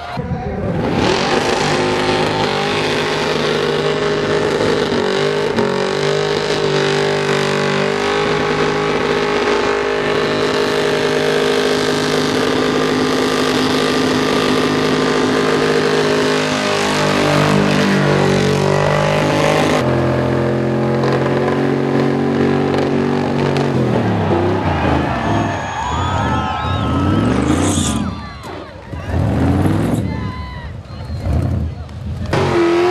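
A car engine held at high, steady revs through a long burnout, with the rear tyres spinning. After about twenty seconds the revs drop a little, and near the end they rise and fall in repeated blips.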